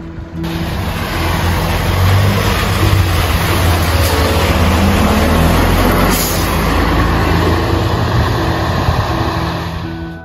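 Shimokita Kotsu route bus's diesel engine running close by, a heavy low rumble, with a short hiss about six seconds in. Background music is faint underneath.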